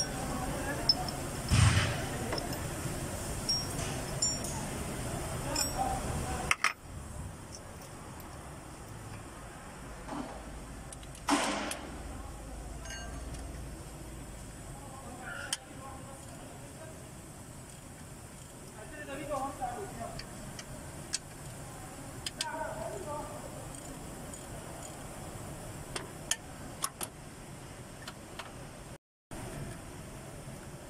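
Scattered clicks and knocks of hand tools on metal as a power steering pump is being worked loose from an engine, with a couple of sharper knocks about 2 and 11 seconds in. Faint voices sound in the background.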